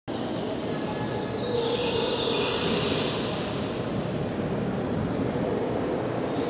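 A steady low rumble with a high-pitched squeal. The squeal starts about a second in and falls in steps over about two seconds.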